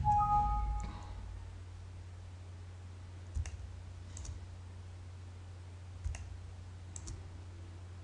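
A few faint, separate clicks of a computer mouse over a steady low electrical hum.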